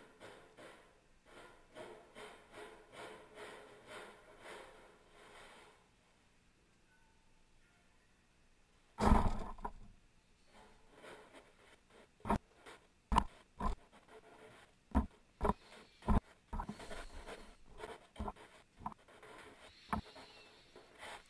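Plastic snow shovel scraping wet snow across a concrete floor with a faint, regular rhythm for the first few seconds. After a quiet spell, a shovelful of snow lands in a plastic jet sled with one loud thud about nine seconds in, followed by a run of sharp knocks and thuds as more snow is dumped into the sled.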